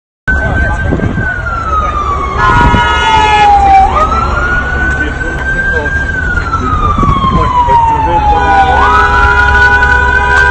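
Emergency vehicle siren wailing, its pitch sliding slowly down and back up, over a steady low street rumble. A horn is held twice, from about two and a half seconds in and again near the end.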